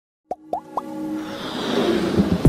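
Electronic intro jingle: three quick plops, each rising in pitch, then a swell of music that grows steadily louder.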